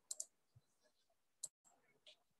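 Near silence broken by a few faint clicks from a stylus tapping on a pen tablet while drawing: two close together at the start and one more about a second and a half in.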